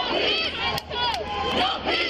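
Crowd of protesters shouting, many raised voices overlapping at once.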